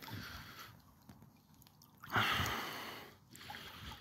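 Wellington boots wading through shallow pond water: soft sloshing, then a louder splash about two seconds in that fades away over about a second.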